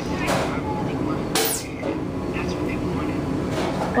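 A steady background hum with faint voices, and two brief rustling knocks from a phone being handled near the microphone about a third of a second and a second and a half in.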